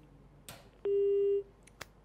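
A single steady telephone-line beep, about half a second long, with a click shortly before and after it, as a phone line connects.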